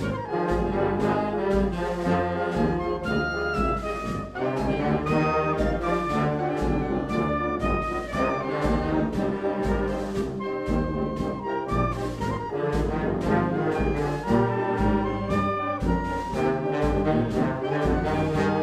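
Brazilian wind band (banda de música) playing a dobrado, a Brazilian military march: brass melody with trombones and trumpets over a steady march beat of bass notes and percussion.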